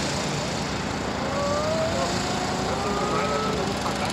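Steady hum of road traffic, with a vehicle's engine pitch rising slowly through the middle.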